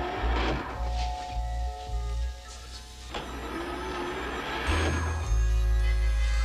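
Sci-fi television soundtrack: background score with a low electronic throb pulsing about twice a second, which becomes a steady drone about five seconds in. Two swelling whooshes come about half a second in and again from about three seconds.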